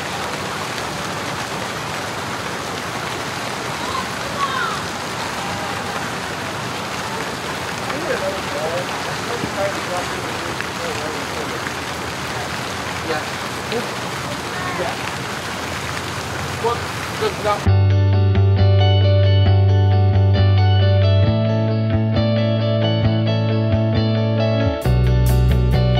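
Steady rush and splash of water from fountain jets and small waterfalls feeding a pool, with faint scattered voices. About three-quarters of the way through, background music with guitar cuts in abruptly and covers it.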